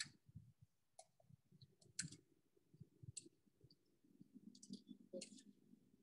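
Near silence, broken by scattered faint clicks and a low, uneven rumble.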